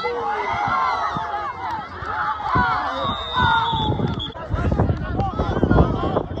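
Many voices overlapping: sideline spectators and players at a football game shouting and talking over one another, with a thin, steady high tone lasting under a second about three seconds in.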